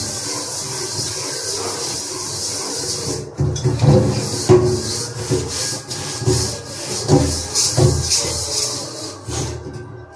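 Dishes being scrubbed by hand: a scourer rubbing on a cooking pot in repeated rough strokes, stronger and quicker from about three seconds in.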